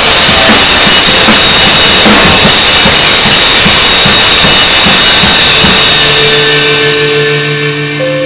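Drum kit played hard along to a song, with Zildjian ZBT cymbals washing over kick and snare strokes. The drumming stops about six seconds in, leaving only the song's held notes.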